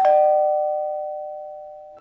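Two-tone ding-dong doorbell chime: the lower second note strikes at the very start over the still-ringing higher note, and both fade together until they cut off near the end.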